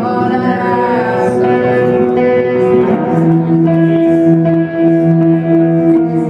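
Live music: electric guitar with long held notes that change every second or two. A woman's sung note glides down near the start.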